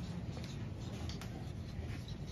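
Dry-erase markers scratching and squeaking on small whiteboards, a few short strokes over a low room hum.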